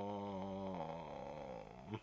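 A man's long, low hesitation hum ("uhhh"), held steady, then wavering and dropping in pitch as it fades, with a paperback pressed against his lips.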